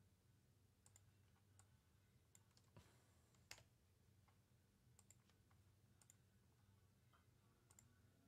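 Near silence: room tone with a scatter of faint, short clicks, the loudest about three and a half seconds in.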